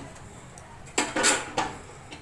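Metal cooking utensils clattering against a steel kadai on a gas stove: three quick clinks about halfway through.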